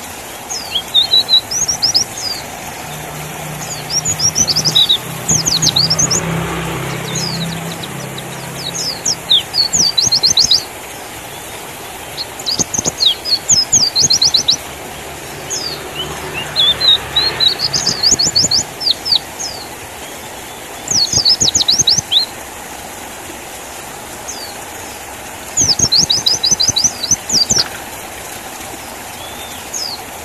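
White-eye (pleci) singing in bouts of fast, high twittering chirps, each bout one to two seconds long with pauses between, about eight bouts in all. A low hum sits underneath during the first third and again around the middle.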